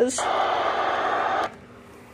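Static hiss from the small speaker of a ZoneGuard weather alert radio with no station coming in. It starts at a button press, holds steady for just over a second and cuts off suddenly.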